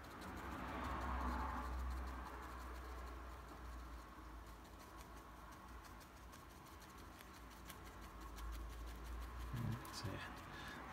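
Faint scratching and tapping of a bristle paintbrush dabbing paint onto watercolour paper, with a soft rush of noise that swells about a second in and then dies away.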